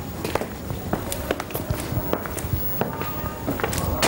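Footsteps of two people walking, a run of uneven steps.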